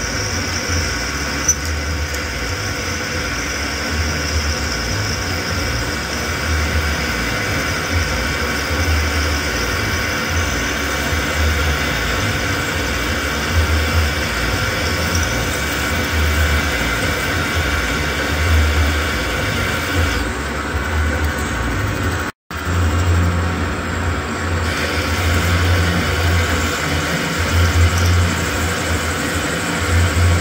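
Metal lathe running steadily while a twist drill in the tailstock chuck bores into the spinning metal bar, giving a steady low hum with a thin whine over it. The sound cuts out completely for an instant about two-thirds of the way through.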